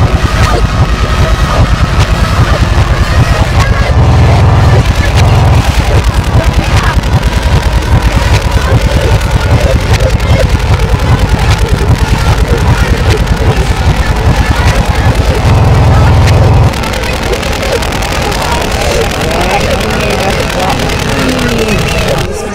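Loud, dense soundtrack played in reverse: heavy pulsing bass under voice-like sounds that cannot be made out as words. The bass drops away and the level falls about three-quarters of the way through, leaving gliding voice-like sounds.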